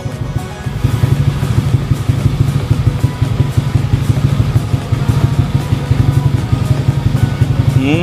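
Fuel-injected single-cylinder scooter engine idling steadily at about 1,300–1,400 rpm, a fast even pulse from the exhaust, getting slightly louder about a second in.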